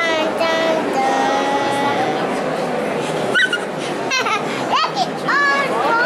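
A small child's high voice talking and calling out several times over the steady chatter of an audience in a concert hall.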